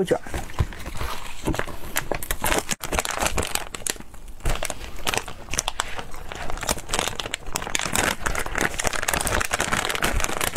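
Plastic snack packets crinkling and rustling as they are handled and torn open, a dense run of small crackles.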